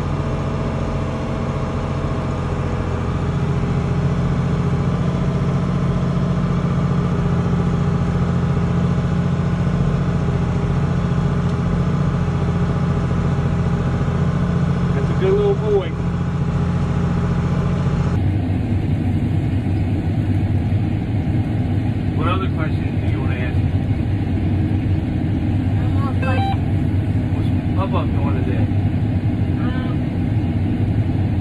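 Engine running steadily, heard from inside a vehicle cab. A little over halfway through, the sound cuts abruptly to a different, lower tractor engine drone inside the cab, with a few brief voice sounds over it.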